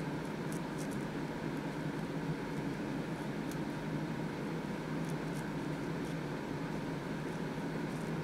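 Steady low hum with a faint hiss, with a few faint ticks, the even background noise of a small room.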